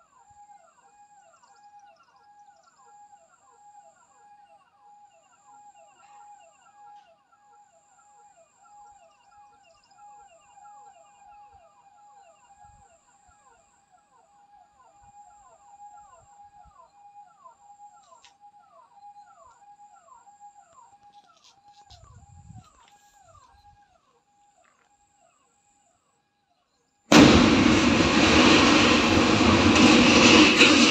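An animal calling over and over in short falling notes, about three a second, faint, with a faint high insect-like buzz coming and going. It stops about 24 seconds in. A few seconds later a loud rushing noise starts suddenly.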